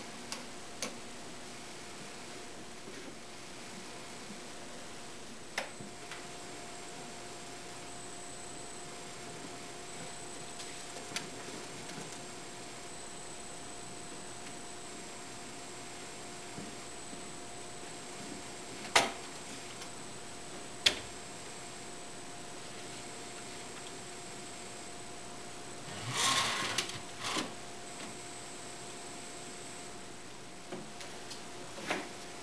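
Metal bar clamps being positioned and tightened: scattered sharp clicks, two loud ones about two seconds apart past the middle, and a short rattling clatter near the end, over a steady faint hum.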